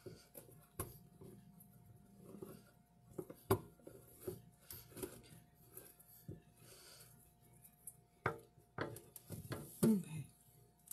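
Kitchen items being handled at a sink: scattered light knocks, clicks and scraping, the sharpest knock about three and a half seconds in and another near the end, over a faint steady hum.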